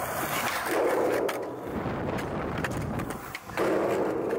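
Skateboard wheels rolling on concrete, with a few sharp clicks, under heavy wind noise buffeting the camera's built-in microphone.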